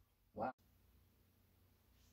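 Near silence, broken only about half a second in by a brief snatch of a voice that is cut off abruptly at an edit.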